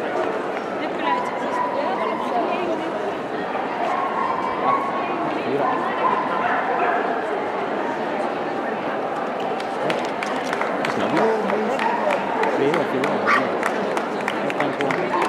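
Dogs barking and yipping over steady crowd chatter, with scattered clapping starting in the last few seconds.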